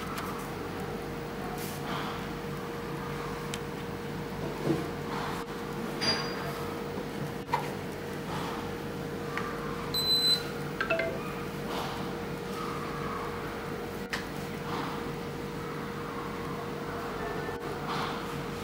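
MC-02 Qi wireless charging pad giving short electronic beeps as phones are set on it, the signal that charging has started: one about six seconds in and a clearer one about ten seconds in. Soft knocks of phones handled on the table and a faint steady hum run underneath.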